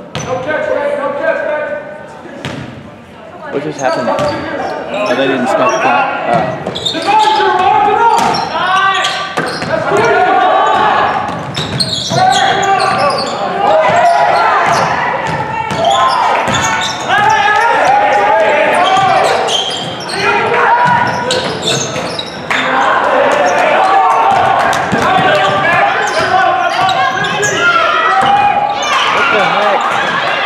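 A basketball being dribbled on a hardwood gym floor during play, with players and spectators shouting and talking throughout, all echoing in the gym.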